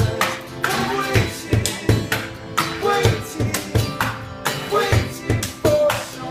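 Live acoustic band playing an instrumental passage: strummed acoustic guitar over a steady low percussion beat, about two beats a second.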